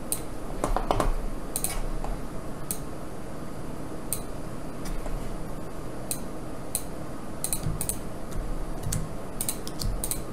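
Irregular sharp clicks of a computer mouse and keyboard, about twenty scattered through the stretch, over a low steady room hum.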